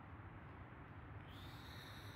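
Faint steady low outdoor rumble. In the last second or so a single high, whistle-like call sounds, rising slightly in pitch.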